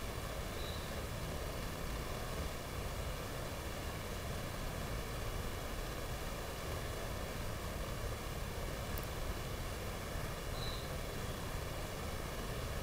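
Faint steady hiss with a low rumble beneath it and no distinct sounds: the background noise of the audio feed.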